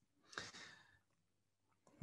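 A single short breath drawn close to the microphone about a third of a second in, amid near silence.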